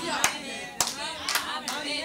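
A handful of scattered, irregular hand claps over faint voices.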